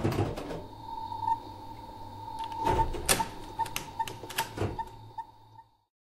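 Outro sound effect on the closing title card: a run of sharp, irregular clicks over a steady tone and a low hum, thickest about three seconds in, fading away just before the end.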